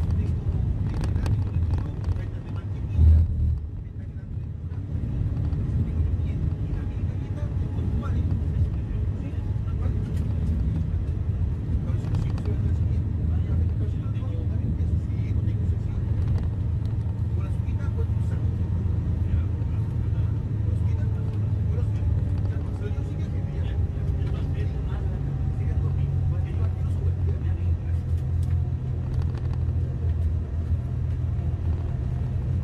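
Steady low road and engine rumble heard from inside a moving vehicle at highway speed, with one loud thump about three seconds in.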